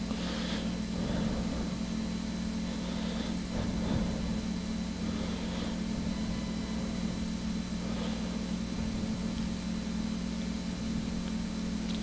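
Steady low background hum at a constant pitch, with faint hiss above it.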